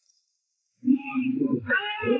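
Near silence for most of the first second, then a short, wavering, cry-like pitched sound from the film's soundtrack.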